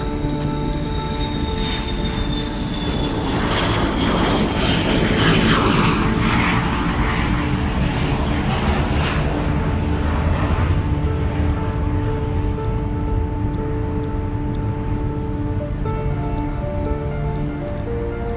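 Jet aircraft engine noise swelling up and fading away over about ten seconds, with a faint high whine sliding slowly down in pitch, under steady background music.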